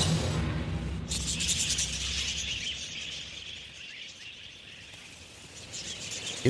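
A flock of budgerigars chattering in a dense, high twittering that grows quieter toward the end. Background music fades out during the first second.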